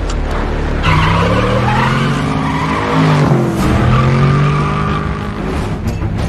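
A car engine revving hard, its pitch rising and falling, with tyres squealing from about a second in.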